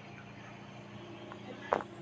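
Faint steady kitchen background hum, with a single short knock near the end.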